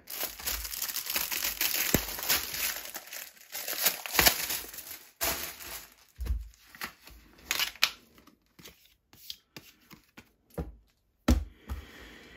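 Clear plastic film wrapping crinkling and tearing as it is pulled off a magazine, continuous for the first five seconds, then a few short rustles with quiet gaps between.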